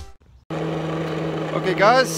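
Background music ends, then after a short gap a steady low hum sets in, and a man's voice begins near the end.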